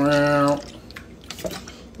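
A man's voice holds one steady note for about half a second. Then comes the quieter splash and trickle of a drink being poured from a plastic bottle into a plastic cup.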